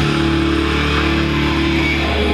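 Live heavy metal band: electric guitars and bass ringing out one sustained chord, with no drum hits.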